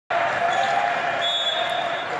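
Din of indoor volleyball play in a large, echoing hall: many voices from the crowd and players, with the sounds of the game on the courts, and a high, steady tone in the second half.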